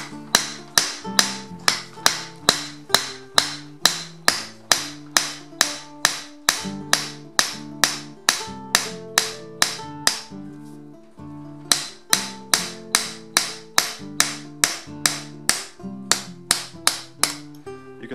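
Flat-faced hammer striking a nail rivet through a steel plate on an anvil, peening its end into a mushroomed head that locks the plate in place. The blows come steadily, about two to three a second, with one pause of a second or so midway. Background guitar music plays throughout.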